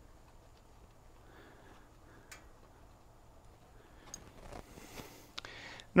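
Faint, scattered small clicks and hand-handling noise as the transmission dipstick cap is threaded back into the six-speed case by hand, with a soft rustle near the end.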